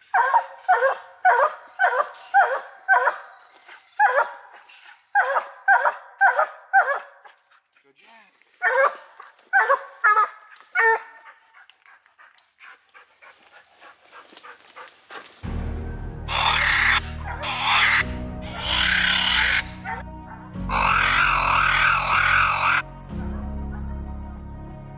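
A coonhound barking treed at the foot of a tree, quick barks about two to three a second in three runs: the sign that it has a raccoon up that tree. About fifteen seconds in, music with a heavy bass comes in and runs on.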